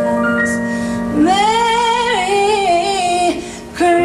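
A woman singing a slow Christmas ballad over electronic keyboard accompaniment, holding one long wavering note from about a second in, with a brief drop in level before the next phrase begins near the end.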